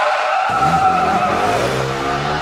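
Motorcycle tyres skidding: a loud, hissing screech that falls slightly in pitch and fades near the end, with a low rumble coming in about half a second in.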